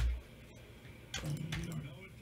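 Computer keyboard and mouse clicks while names are entered into an on-screen list: one sharp click with a low thump at the start, then a few fainter clicks about a second later. A short low murmur of a man's voice runs under the later clicks.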